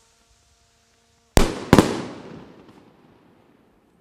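Two aerial firework rockets bursting overhead: two sharp bangs less than half a second apart, each followed by a long echoing tail that fades out over about a second and a half.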